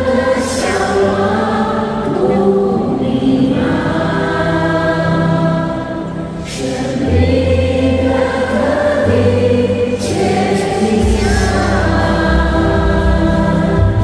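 A group of women singing a song in Chinese into microphones, over amplified instrumental accompaniment. There is a short dip between sung phrases about six seconds in.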